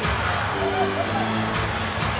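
Arena music playing a short held phrase that repeats about every two seconds, over a basketball being dribbled on a hardwood court.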